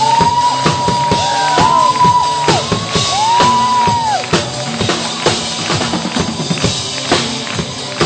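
Acrylic drum kit played live in a steady groove, with bass drum, snare and cymbal strokes. Over the drums, for about the first half, runs a high melodic line that slides up and down in pitch.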